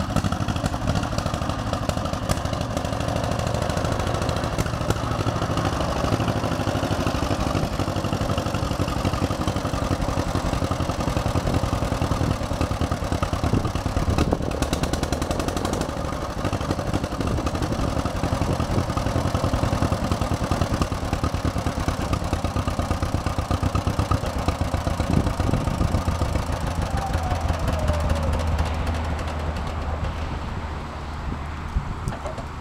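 1949 John Deere Model M tractor's vertical two-cylinder gasoline engine running steadily while the tractor is driven slowly over gravel, with a rapid, even beat of exhaust pulses.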